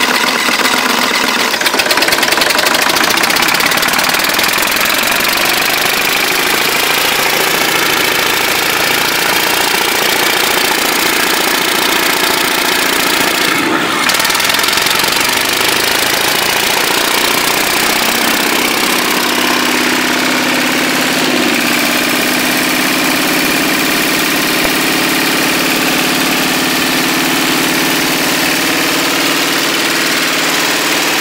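Freshly rebuilt Perkins 6354 six-cylinder marine diesel engine, run without its turbocharger, catching right at the start and then running loudly and steadily with a little throttle on it. Its note shifts somewhat about two-thirds of the way through.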